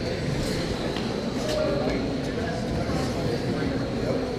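Indoor RC race ambience: electric Traxxas Slash-type short-course trucks running laps on the track, mixed with the voices of people in the hall. A faint steady high tone sounds throughout.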